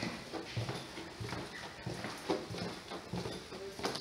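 Footsteps on a wooden floor, an irregular series of soft knocks and thuds, with rustle from a handheld camera.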